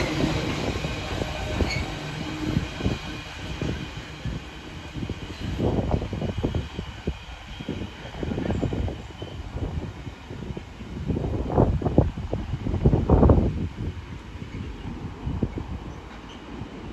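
The last container wagons of an intermodal freight train rolling past over the rails, then the rumble fading as the train draws away, with uneven surges along the way.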